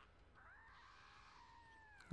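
Near silence, with a faint, drawn-out cry from the anime soundtrack playing very low, starting about half a second in.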